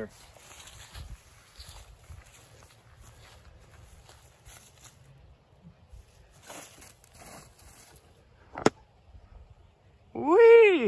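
Soft footsteps on grass and dry leaves during a forehand disc golf throw, then a single sharp snap about three-quarters of the way through as the disc is released.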